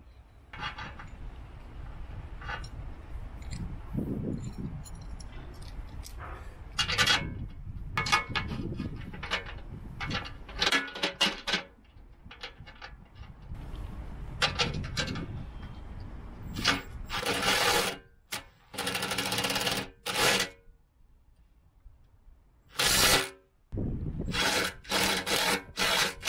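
Cordless impact driver running bolts in to fasten plow markers to a steel plow blade, in several loud bursts of about a second each in the second half. Before that come scraping and handling noises as the bolts and markers are fitted by hand.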